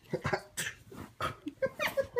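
A baby making a rapid string of short squeals and breathy vocal noises, several a second, some rising and falling in pitch.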